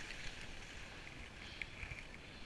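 Skis sliding and scraping over packed piste snow, a steady hiss, with a low rumble of wind on the microphone.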